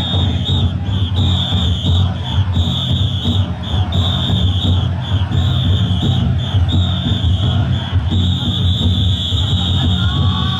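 Big drums beating steadily inside several taiko-dai drum floats, with a loud shrill whistle-like tone sounding in short and long blasts over a crowd.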